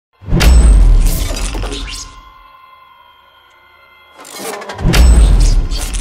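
Intro sound design: two loud hits with deep bass and a crashing top, the first right at the start and the second near 5 seconds. Each dies away over a second or two, and a quiet sustained tone is held between them.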